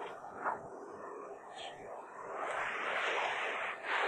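Hushed, whispered talking, without clear voiced speech, growing louder about halfway through.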